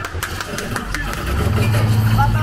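Transformers dark-ride vehicle starting off: a quick run of sharp clicks, then a low engine-like rumble that swells about a second and a half in.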